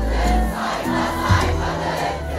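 A concert crowd singing and shouting along loudly over a live pop band, with long, deep bass notes held underneath.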